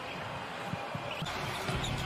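Basketball game court sound: a steady arena background with a few soft thuds of the ball bouncing on the hardwood floor.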